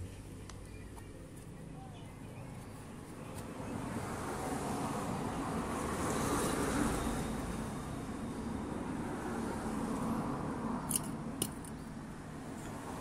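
Passing road-vehicle noise that swells over a few seconds and fades again, with a few sharp clicks near the end.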